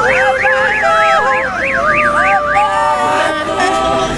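An electronic siren sounding a fast up-and-down yelp, about three sweeps a second, which stops a little under three seconds in. Voices singing and wailing run underneath it.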